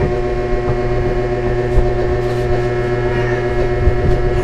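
Steady motor hum with several fixed pitches.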